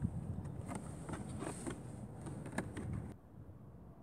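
Cardboard boxes being handled: scattered light taps, scrapes and clicks of cardboard over a low rumble, cutting off abruptly about three seconds in.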